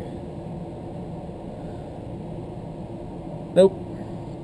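Ventilation system running with a steady, low, even hum. A brief vocal sound comes near the end.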